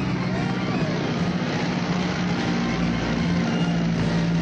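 Propeller aircraft engine droning steadily in flight.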